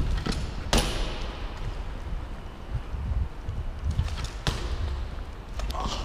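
BMX bikes rolling over a concrete floor: a steady low rumble of tyres, with two sharp knocks, one just under a second in and one a little past the middle, as the bikes bump and clatter.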